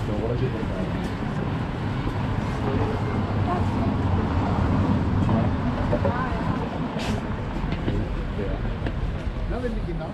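Busy old-town street ambience: a steady low rumble of traffic and wind on the microphone, swelling around the middle, with passersby talking and a sharp click about seven seconds in.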